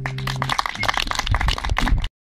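A small audience clapping as a performance ends, while the guitar's last low note rings under it for about half a second. The applause cuts off abruptly at the end.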